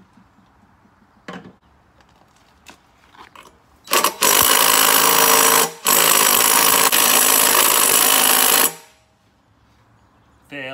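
A cordless drill cranks a small two-stroke generator engine through its flywheel nut in two loud spinning runs, about 1.5 s and 3 s long, with a short break between. The engine does not catch, for lack of spark from a faulty spark plug wire. A few light handling clicks come before it.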